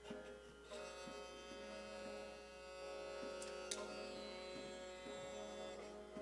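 Harmonium and a bowed string instrument playing long sustained notes, faint, the held chord growing fuller a little under a second in.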